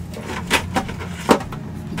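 A few knocks and rattles as a small submersible fountain pump and its hose are handled and lifted out of a plastic bucket, the loudest about a second and a quarter in, over a steady low hum.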